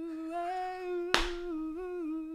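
A man humming one long held note, doo-wop style, that wobbles a little near the end, with a single sharp click about a second in.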